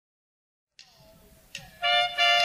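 Silence, then the opening of a recorded Latin band song: a few faint clicks and, near the end, a loud held chord from wind instruments.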